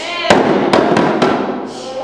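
Group of djembes played by hand, sharp strikes in a loose rhythm, about four in the first second and a half, ringing in the room.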